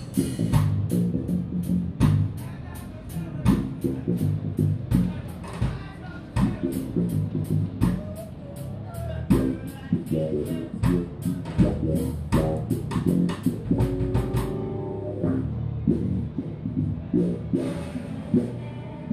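Electric bass played through Markbass amps and speaker cabinets with a live drum kit: busy bass lines over dense drumming and cymbal strokes. About fourteen and a half seconds in, the drumming thins out and a held bass note rings before the playing picks up again.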